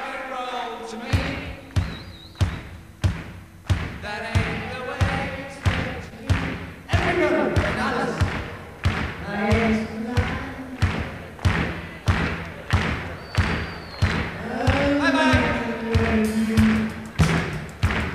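Live rock band in a stripped-down passage: a steady kick-drum beat, with voices singing over it.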